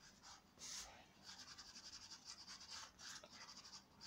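Faint scratching of a black chalk pastel stick on paper: quick, short shading strokes, about six a second.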